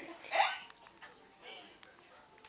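A person's short wordless vocal burst about half a second in, followed by a fainter one.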